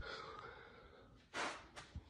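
Quiet room tone, then one short, sharp intake of breath by a man about one and a half seconds in.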